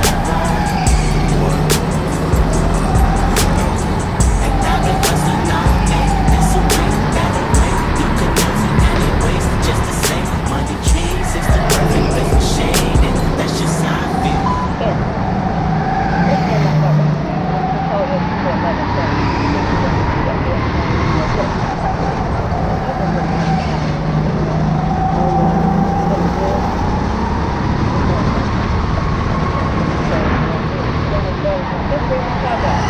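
Onboard sound of an indoor rental go-kart's motor, its pitch rising and falling every few seconds as the kart speeds up on the straights and slows for the corners, with track and chassis rattle underneath.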